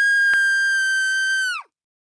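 A long, high-pitched scream, held steady and then dropping away about one and a half seconds in.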